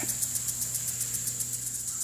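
Insects trilling high and steady, pulsing about ten times a second, over a steady low hum.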